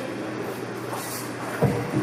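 Steady background room noise, with one brief low thump about a second and a half in.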